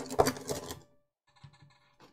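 Hard plastic clicking and clattering as Beyblade tops are handled, a quick run of sharp clicks in the first second that then dies away.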